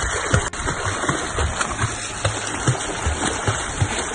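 Water splashing as a swimmer in a life jacket kicks her legs at the sea surface, irregular splashes over a steady rush of churned water.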